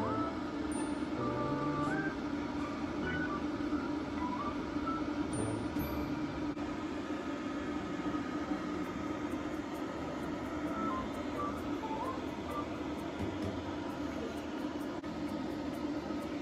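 A blow dryer running steadily, its noise unchanging throughout. Music plays in the background.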